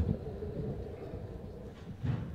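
Low, steady rumble of hall and PA noise with a faint steady hum, and a knock right at the start.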